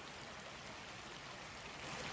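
Faint, steady rush of a small creek running shallow over rocks.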